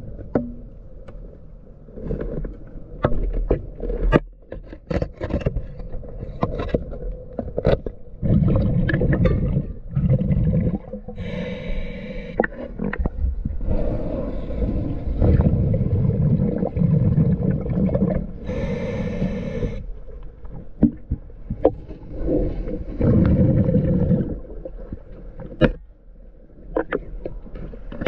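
Underwater sound of a diver breathing through a regulator: rumbling rushes of exhaled bubbles every few seconds and two brighter hissing inhalations. Throughout, scattered clicks and scrapes come from the tool working on the boat's hull.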